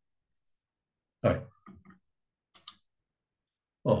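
A man's short voiced sound about a second in, then two quick mouse clicks close together about halfway through, as the slide is changed; the rest is dead silence.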